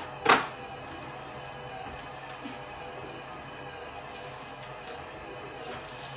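A kitchen drawer knocking shut just after the start, followed by faint steady background music.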